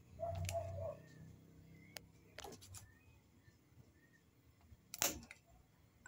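Quiet handling sounds of a stone pressed onto and lifted off plastic bottle caps melting on parchment paper in a hot metal pan: a short low hum at the start, then a few soft clicks and knocks, the sharpest about five seconds in.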